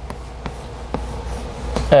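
Chalk writing on a chalkboard: a few short taps and scratches as symbols are written, over a steady low hum.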